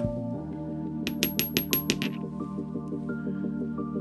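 Background music, with a quick run of about seven small, bright metallic clinks about a second in as a nail e-file bit is handled.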